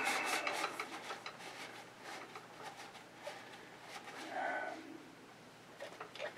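Cloth shop rag rubbing and wiping over the grimy metal of a vintage sewing machine, faint and scratchy, with a short hum about four and a half seconds in.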